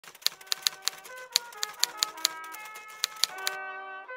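About a dozen sharp clacking clicks in quick, uneven runs, like typewriter keys, over a gentle melodic music track. The clicks stop about three and a half seconds in, leaving the music holding a chord.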